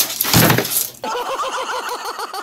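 A loud crash as a leaping cat knocks things off a desk. About a second in, a quick repeating music phrase starts.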